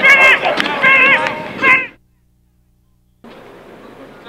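Loud, high-pitched shouting voices with a few sharp knocks. The sound cuts off suddenly about two seconds in, leaving near silence for about a second, then faint outdoor background noise.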